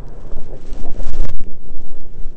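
Wind buffeting the microphone in loud, uneven gusts, with a brief knock just over a second in.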